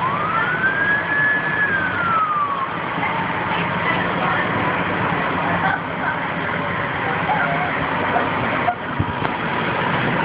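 A fire engine siren winds up in one wail to a high pitch, holds briefly and falls away within the first three seconds, over steady background noise from the fire scene.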